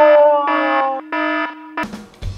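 A synthesized buzzer-like electronic tone, held and sliding slightly down in pitch, then broken into a few short beeps before it cuts off shortly before the end.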